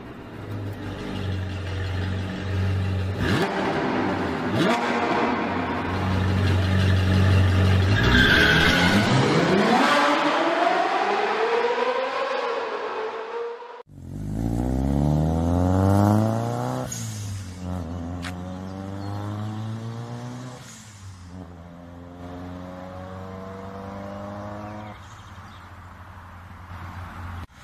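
A car engine running with steady revs, then revving, its pitch falling and rising. After a sudden cut just past halfway, a car accelerates hard through the gears, the pitch climbing and dropping back at each of two shifts.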